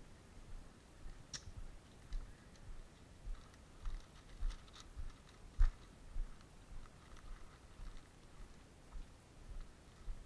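Footsteps of a person walking, out of a concrete-floored garage and across grass, heard as soft thumps about every half second with light clicks and rustles; one step or knock a little past the middle is louder.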